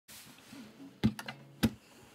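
Acoustic guitar strings struck while muted: sharp percussive clicks in a steady beat, one about a second in and another about 0.6 seconds later, with two lighter taps between.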